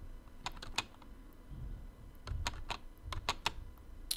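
Computer keyboard keys clicking: a few strokes about half a second in, then a run of five or six more from about two to three and a half seconds in.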